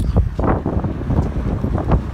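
Wind buffeting the microphone: a loud, uneven low rumble with gusty surges.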